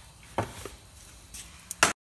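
A few sharp knocks and clacks of handling a pan at the cooker, spaced out at first and then three in quick succession, the last the loudest. The sound cuts off dead just before the end.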